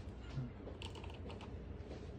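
A handful of faint, quick ticks from a pencil against paper, about a second in, over a steady low hum.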